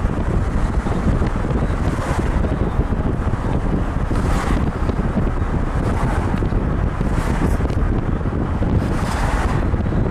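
Wind buffeting the microphone over the steady low rumble of a moving car, with several brief whooshes of passing air and traffic, one as another car goes by about six seconds in.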